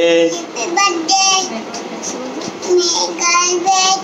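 A young child singing in a high voice: a string of short held notes with brief pauses between them.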